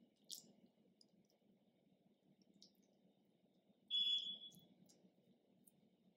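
Faint clicks and soft handling noises of hands shaping wet vegetable dough over a glass bowl, against a low room hum. About four seconds in comes a single short, clear ringing tone that fades within about half a second.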